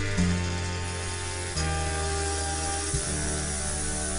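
Wrestling entrance theme opening with a brass fanfare: long horn chords that change about every second and a half over a deep bass.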